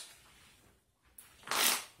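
A playing-card deck rustles in one short swish about a second and a half in, as a packet of cards is split off the deck to make a pile.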